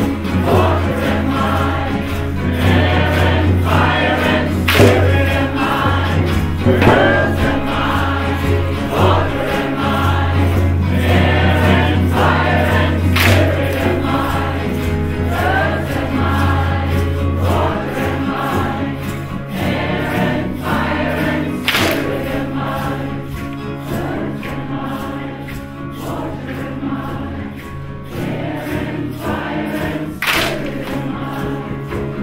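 A large group of voices singing a Native American power chant together, with a steady low hum beneath for about the first half and a few sharp knocks spaced several seconds apart.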